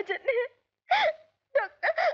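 A woman crying out in distress, wailing a word between sobs in three short, tearful outbursts with brief silences between them.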